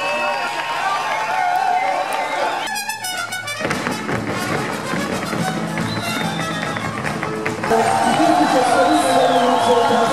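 Mariachi band playing live, with trumpets and a voice over a bass line. The music changes abruptly about a third of the way through and gets louder from about eight seconds.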